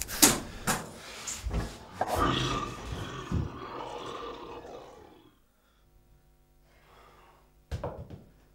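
A few sharp knocks and dull thumps, then a harsh, roar-like noise about two seconds in that lasts about three seconds and fades away.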